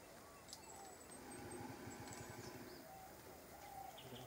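Faint forest ambience with a few thin, high bird chirps and whistles scattered through it.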